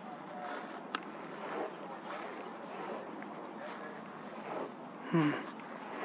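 Steady outdoor background hiss, such as breeze, with one sharp click about a second in; a man murmurs a short 'hmm' near the end.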